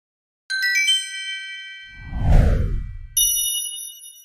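Logo sting sound effect. About half a second in comes a quick run of bright chime notes that ring on; near the middle a deep whoosh swells up as the loudest part; then a final high bell chord rings out about three seconds in.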